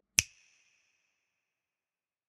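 Outro sound effect: a single sharp click with a brief high ringing tail, just after the music cuts off.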